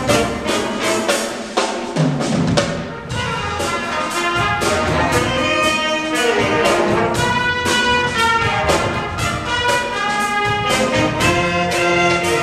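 High school jazz big band playing live: trumpets and saxophones playing sustained brass and reed lines over a drum kit keeping a steady beat.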